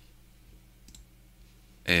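A few faint computer mouse clicks over a low steady hum, then a short spoken hesitation just before the end.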